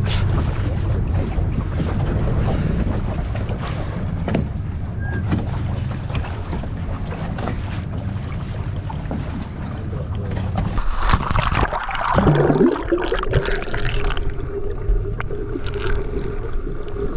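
Small motorboat on open sea: a steady low engine rumble with wind and water noise. About eleven seconds in, a louder, brighter rush of noise with a falling sweep breaks in, and a steady hum remains after it.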